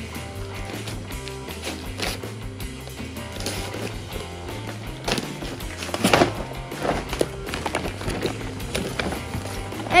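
Background music with a steady bass line, over which gift wrapping paper is torn and rustled in several short bursts, the loudest about six seconds in.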